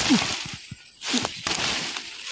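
Dry banana leaves and broken banana stalks rustling and crackling as they are handled and pulled, with a sharp snap at the start and scattered small cracks.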